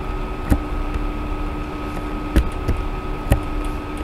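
Three sharp computer-mouse clicks, about half a second in, near two and a half seconds and near three and a half seconds, over a steady electrical hum and hiss.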